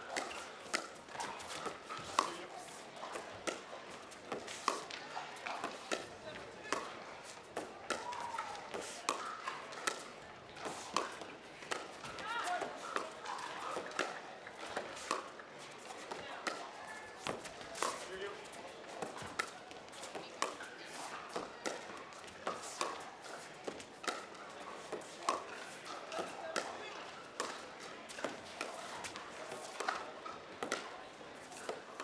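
Pickleball rally: hard composite paddles popping the plastic ball again and again at an irregular pace of about one or two hits a second, with the ball bouncing on the court, over the chatter of an arena crowd.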